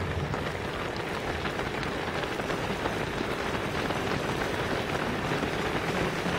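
Footsteps of a large pack of runners on a tarmac road: a dense, steady patter of many shoes, growing a little louder as the pack passes close.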